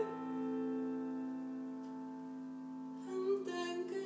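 A held piano chord ringing on and slowly fading after the sung phrase ends, with a woman's voice briefly coming back in about three seconds in.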